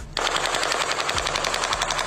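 A sustained burst of automatic weapon fire: rapid, evenly spaced shots in one unbroken string lasting nearly two seconds.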